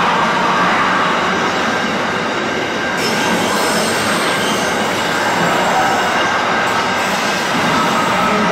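Container wagons of a long intermodal freight train rolling past at speed, with steady wheel-on-rail noise.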